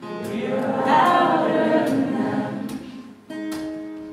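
Audience singing along as a crowd of many voices over acoustic guitar strumming, loudest about a second in; the crowd singing drops away about three seconds in, leaving the guitar chord ringing.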